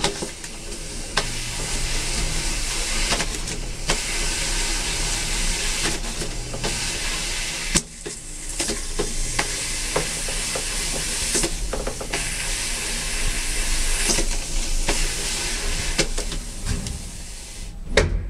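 Elevator car in motion: a steady hiss with a low hum underneath, briefly dropping off about eight seconds in, with scattered clicks and knocks.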